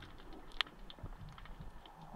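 Faint underwater ambience with a low rumble and scattered small clicks, one sharper click a little past half a second in.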